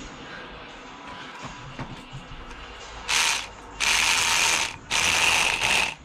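Hand-held electric spin scrubber brush running in three short bursts, each about half a second to a second long, its motor whirring as the spinning bristle head scrubs a glass shower screen.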